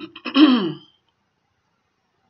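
A woman clearing her throat once, a short sound with a falling pitch lasting under a second.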